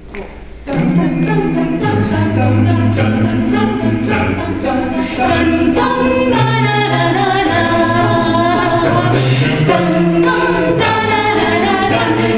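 Mixed men's and women's a cappella group singing through microphones, starting a song suddenly under a second in: layered vocal chords over held, sung bass notes.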